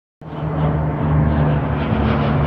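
Twin-engine turboprop airliner flying low overhead, a steady low propeller drone.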